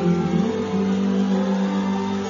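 Live pop-rock band music played through a concert PA, with guitar and one long held note.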